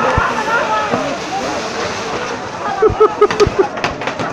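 Fireworks on a torito, a bull-shaped frame of fireworks carried through a crowd, going off over crowd voices, with a sharp pop just after the start and a quick run of about five pops about three seconds in.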